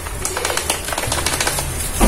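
Thin plastic spice bag crinkling and rustling in the hand as ground coriander is shaken out onto the fish, a fast run of small crackles.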